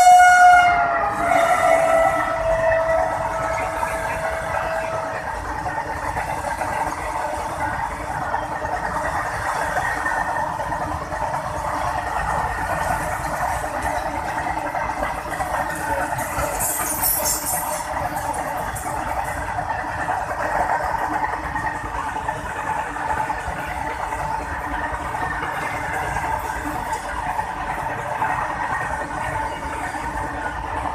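An electric locomotive's horn cuts off just after the start, and a fainter tone slides down in pitch over the next few seconds as the locomotive passes. A long goods train of open wagons then runs past at speed with a steady rumble and wheel clatter, with a brief high hiss about halfway through.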